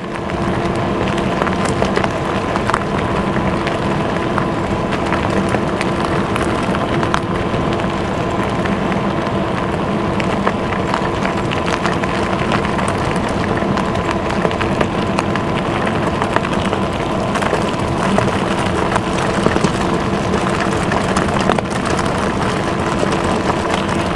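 Lectric XP Lite e-bike riding fast over desert gravel: a steady rush of tyre and riding noise with small crackling clicks from the gravel, and a faint steady whine underneath.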